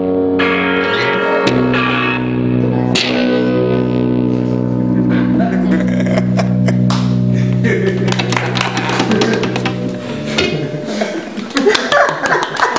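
Acoustic guitars and an acoustic bass guitar hold long ringing notes that end about ten seconds in. Then a few people begin clapping near the end.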